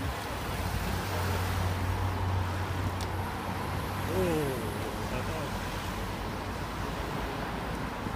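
Cars in a cycling race convoy passing at road speed, with a steady low engine hum and road noise. A brief falling shout from a voice comes about four seconds in.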